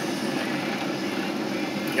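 Steady mechanical hum with a hiss, even throughout, from a running motor.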